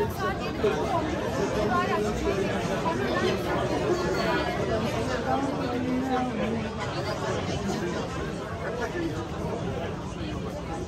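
Chatter of many people talking at once among diners and passers-by, overlapping voices with no single clear speaker.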